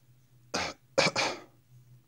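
A man coughing: one short cough about half a second in, then a quick double cough, over a steady low hum.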